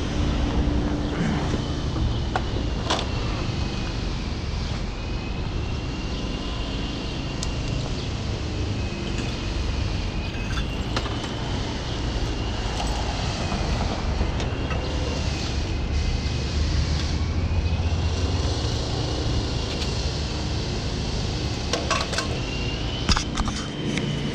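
City street traffic ambience: passing vehicles give a steady low rumble that swells for a few seconds in the second half. Over it a faint high tone slowly rises and falls. Near the end there are a few sharp knocks as the camera is handled.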